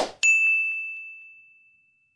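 A brief swoosh, then a single bright ding that rings and fades away over about a second and a half: the sound effect of an animated Like button being clicked.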